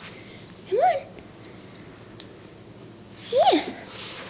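A dog whining twice, two short cries about two and a half seconds apart, each rising then falling in pitch.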